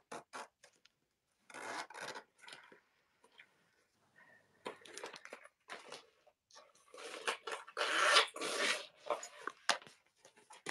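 Fabric and zipper tape being handled close to the microphone: irregular scratchy rubbing and rustling, loudest from about seven to nine seconds in.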